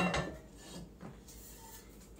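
Faint rubbing and scraping of kitchen things being handled on a counter, with a light click about a second in.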